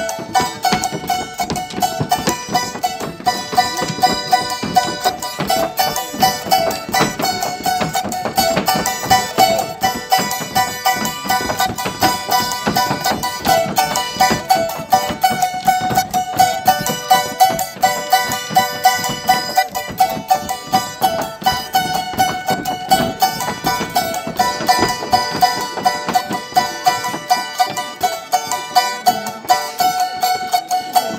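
Charango strummed in a quick, even rhythm in traditional Andean folk music, with a steady high melody line held above the strumming.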